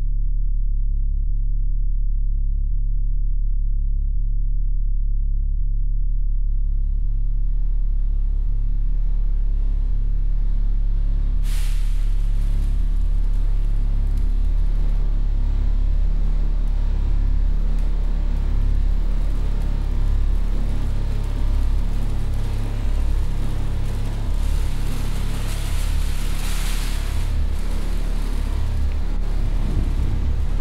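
Ambient soundscape score: a deep, steady rumbling drone with hissing noise that fades in gradually from about six seconds in, a sudden burst of noise near twelve seconds, and a swell of noise near the end.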